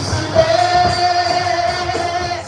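A woman singing a worship song into a microphone over backing music, holding one long, steady note from about half a second in.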